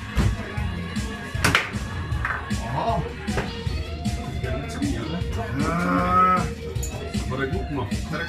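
Table football in play: repeated sharp clacks of the ball being struck by the rod-mounted figures and rods knocking against the table, the loudest about one and a half seconds in.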